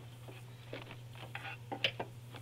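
Rubber hydraulic oil hoses being handled and fed down into an engine bay: scattered light rustles, scrapes and small knocks, the sharpest one near the end, over a steady low hum.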